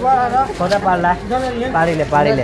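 Men's voices talking close by, with no clear words picked out.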